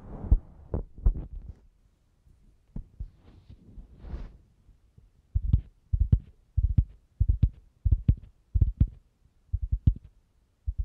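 Close-miked ASMR tapping: short, dull taps with a deep low end, scattered at first with a soft rubbing swish, then coming in quick pairs and threes from about five seconds in.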